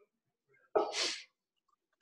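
A single sneeze from a person, sudden and loud, about a second in and lasting about half a second.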